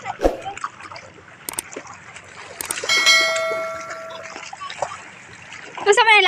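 Shallow sea water splashing as a child paddles through it, with a few sharp clicks. About three seconds in, a bright bell ding from a subscribe-button sound effect rings out and fades over about a second and a half.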